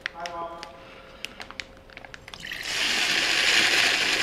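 A Juicero juice packet squeezed by hand over a glass: light crinkling clicks from the plastic pouch, then, a little under three seconds in, a loud steady hiss as the juice starts squirting from the spout into the glass.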